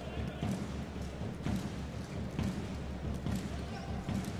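A handball being bounced on the indoor court, a dull thud about once a second, over the steady murmur of the arena crowd.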